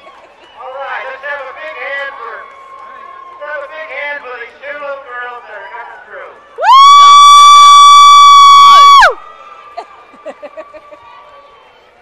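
An air horn sounds one loud, steady, high-pitched blast of about two and a half seconds, sliding up as it starts and down as it dies, over the voices and cheering of spectators.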